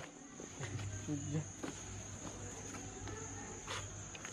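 A steady high-pitched insect buzz, likely cicadas or crickets, with a faint low hum through the middle and a brief murmur of voices about a second in.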